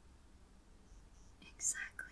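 Faint room hiss, then a short breathy whisper from a woman near the end.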